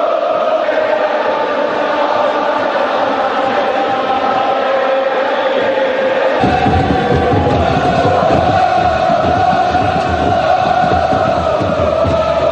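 A large stadium crowd of football supporters chanting and singing in unison, loud and sustained. About six seconds in the sound turns fuller and closer, with more low rumble beneath the chant.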